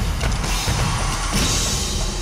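Television news closing theme music with percussion hits and a whooshing sweep near the end.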